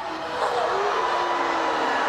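Studio audience murmuring: a steady wash of crowd noise with a faint voice or tone held through it.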